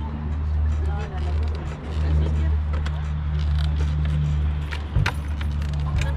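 Crowd of guests talking at once, over a loud low hum that holds steady with a few short breaks; a sharp knock about five seconds in.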